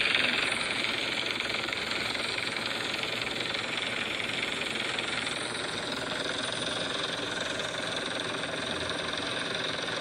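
Helicopter hovering overhead, its rotor and engine noise steady and heard through a device's small speaker.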